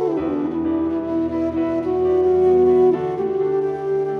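Bamboo bansuri flute playing a slow, soulful melody that slides down at the start and settles into long held notes, over a soft instrumental accompaniment.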